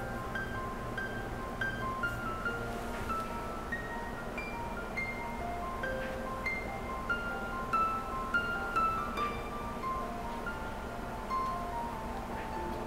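Background music: a gentle melody of light, bell-like notes, a few per second, stepping up and down in pitch.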